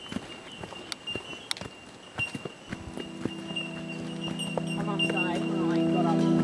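Irregular footsteps crunching on a dirt bush track. From about three seconds in, a held musical chord fades in and swells steadily louder.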